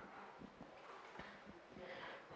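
Near silence: room tone during a pause in a man's talk, with a faint breath in near the end.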